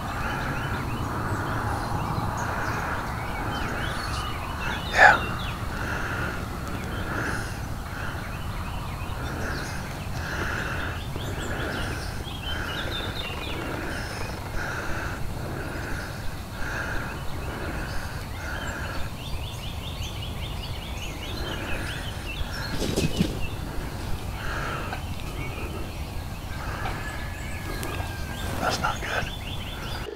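A wild turkey gobbles once, loud and brief, about five seconds in. Behind it a dawn chorus of woods and field carries a steady pulsing call about every two-thirds of a second, with scattered faint clicks later on.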